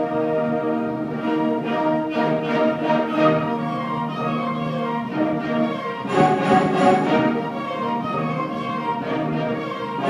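A student concert band playing: held chords of brass and woodwinds, swelling into a louder, fuller passage about six seconds in.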